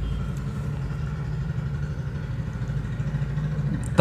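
A steady low mechanical hum, like an engine idling, holding at an even level.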